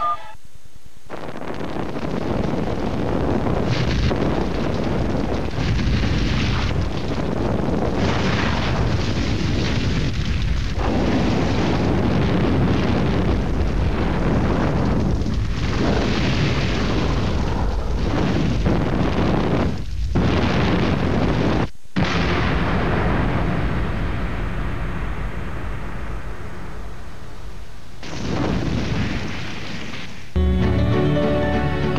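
Explosions and the rush of burning flames, loud and continuous, with a few short drops in level and a very brief cut about 22 seconds in.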